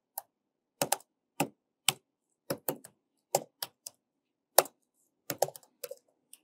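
Typing on a computer keyboard: about fifteen separate keystrokes, unevenly spaced at roughly two or three a second, with short pauses between bursts.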